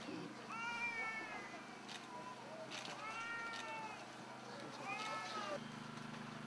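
Three faint animal calls about two seconds apart, each lasting under a second and rising then falling in pitch.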